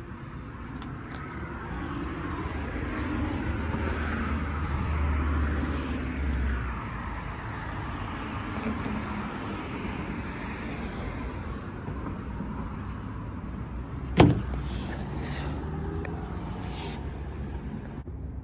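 Street traffic: a vehicle passing, its rumble swelling and fading over several seconds, then a single sharp knock about fourteen seconds in.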